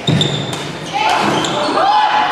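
Badminton rally in a sports hall: a sharp racket strike on the shuttlecock right at the start and another about half a second in, then short shoe squeaks on the court as the players move and lunge.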